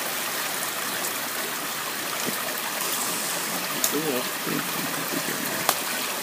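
Water running steadily through a concrete river-intake channel and tank. Faint voices come in briefly partway through.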